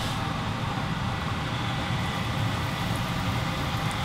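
Steady kitchen stove noise: a range hood fan running with a hum, over food frying in hot pans, including a steak in a smoking-hot cast iron skillet.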